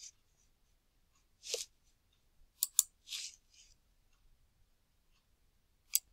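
Quiet room with a few soft breaths and two quick sharp clicks close together just past the middle, plus one more click near the end.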